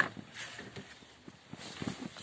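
A car door latch clicks sharply as the rear door handle is pulled open, followed by faint light knocks and rustling as the door swings open.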